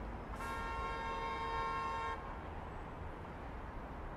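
A car horn sounding once, a steady honk held for a little under two seconds that starts about a third of a second in, over low steady background noise.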